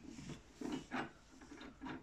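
Faint metal clicks and scraping, several in a row, as an open-end wrench loosens the collet nut of a table-mounted router to free the bit for a change.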